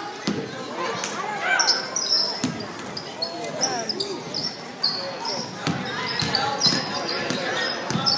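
Basketball game in a gym: the ball bouncing on the hardwood floor with a few sharp knocks, sneakers squeaking again and again, and players' and spectators' voices calling out, all echoing in the large hall.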